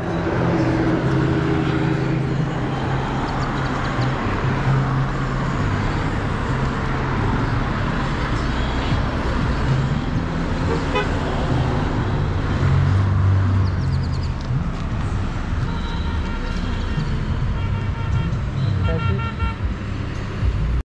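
Road traffic passing close by: car engines running and tyre noise. Several short horn toots come in the last few seconds.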